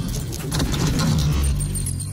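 Sound effects for an animated logo intro: rapid metallic clinks and rattles over a steady deep rumble.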